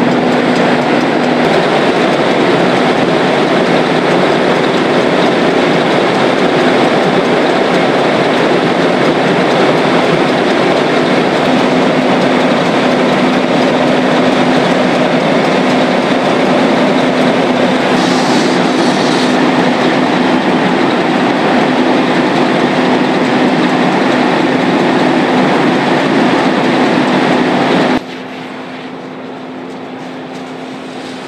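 Loud, steady roar of a fire engine's diesel engine and pump running at high revs to supply hose lines at a house fire, with a constant low hum. Near the end it drops suddenly to a much quieter level.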